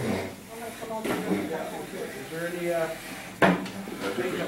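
People talking in a room, with one sharp knock about three and a half seconds in, the loudest sound.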